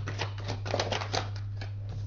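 A deck of tarot cards being shuffled by hand: a quick run of card clicks and flicks, densest in the first second and thinning toward the end.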